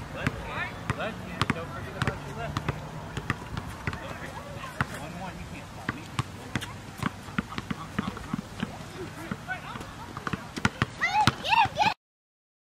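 Basketball bouncing on an outdoor court, a string of sharp irregular thuds as it is dribbled. High-pitched voices call out near the end.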